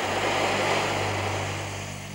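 Steady rushing, roaring noise of the heating apparatus working on a white-hot iron bar, with a low steady hum underneath; it slowly dies down toward the end.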